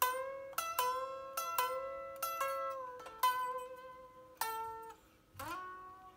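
Unamplified solid-body electric guitar played lead: a run of about a dozen single picked notes, some bent up or let down in pitch, with a thin, quiet string tone. After a short pause near the end, one note glides upward in pitch.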